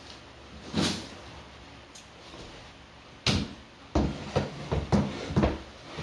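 A series of knocks and bumps from objects being handled and set down: one about a second in, a sharper one a little past three seconds, then a quick run of about five near the end.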